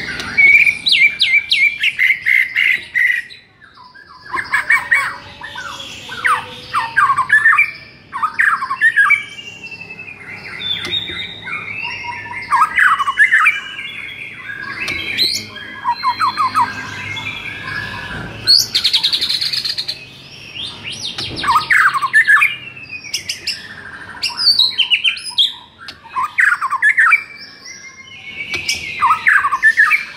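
White-rumped shama singing a long, loud run of varied whistled and chattering phrases, each a second or two long, with brief pauses between them.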